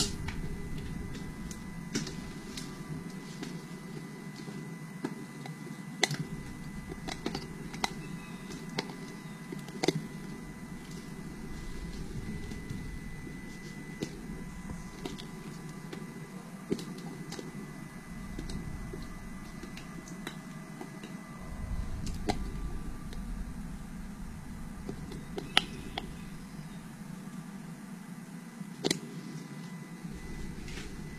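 Steady low room hum with a faint high whine, broken by scattered light clicks and knocks from handling at the bench.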